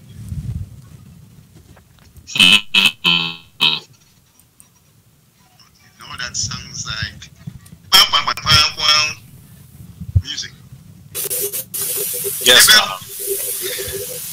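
Distorted, tinny voices coming over a video-call link, breaking into short honk-like bursts, over a low hum, with a hiss near the end. The host takes the tin-can sound for a fault from a newly replaced audio cable.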